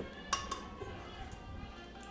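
An egg cracked against a glass blender jar: two sharp clicks of shell on glass about a third and half a second in. Steady background music plays throughout.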